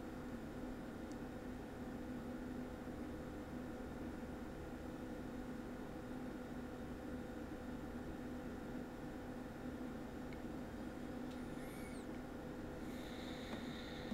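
Quiet room tone: a steady low hum runs throughout, with a faint brief high squeak about eleven seconds in.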